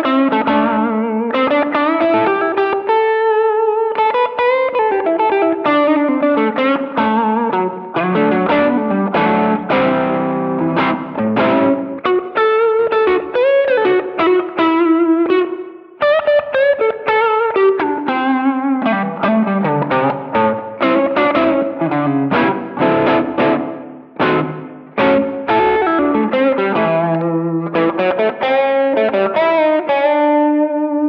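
Single-coil Stratocaster electric guitar played through a ThorpyFX Peacekeeper overdrive set to low gain: a lightly distorted single-note lead line with frequent string bends.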